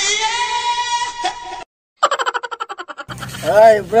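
Edited comedy soundtrack: a held musical sound effect with one steady note, cut off abruptly into about half a second of dead silence. A fast pulsing music clip follows, and a voice with sliding pitch comes in near the end.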